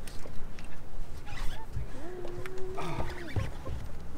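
A person's long, drawn-out wordless vocal exclamation, about a second long, starting about two seconds in, with its pitch rising at the start and falling at the end, made while a big striped bass pulls hard on the rod.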